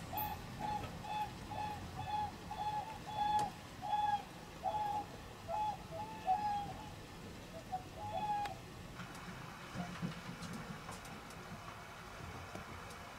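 Whooper swans calling: a regular series of trumpeting honks, one to two a second, that thin out and stop after about eight seconds.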